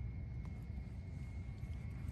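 Low, steady outdoor background rumble with no distinct event, the ambience of an open field in a built-up area.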